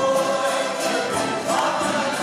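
A tuna group of men and women singing together, accompanied by strummed small string instruments and a guitar.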